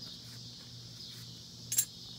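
Faint steady chirring of insects, with one short metallic clink near the end as a small steel part is set down on the concrete.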